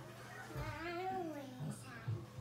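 A person's long, high-pitched playful vocal call, rising and then falling in pitch over about a second.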